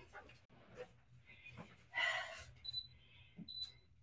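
Two short high electronic beeps from the control panel of a LifePro RumbleX Pro 4D vibration platform as its buttons are pressed to set a new program, near the end. A short breath-like hiss comes about two seconds in.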